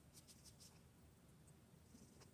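Near silence with faint typing clicks on a phone's on-screen keyboard: a quick run of taps in the first half-second and one more about a second and a half in.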